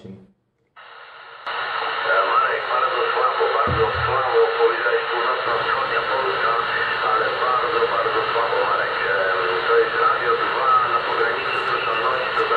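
CB radio in receive on upper sideband: a distant station's voice comes through the loudspeaker buried in steady static, which cuts in under a second in. A short low thump about four seconds in.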